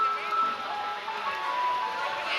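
Idol pop song playing over the stage sound system, a melody of held notes over a full backing: the closing bars of the song.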